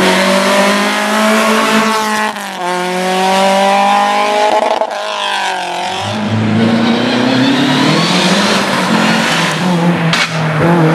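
Rally car engines at full throttle. A Mk1 Volkswagen Golf revs hard, and its pitch climbs and drops twice as it shifts up through the gears. About six seconds in, the sound cuts to a second car whose engine note climbs steadily.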